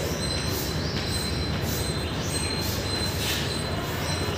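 Chalk drawing short strokes on a blackboard, faint against a steady background hiss and hum with a thin high whine.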